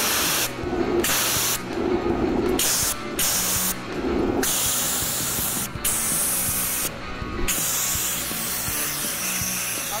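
CO2 fire extinguisher discharging in loud hissing blasts as its thrust pushes a rolling chair along, the flow cut off briefly about six times as the valve is let go and squeezed again.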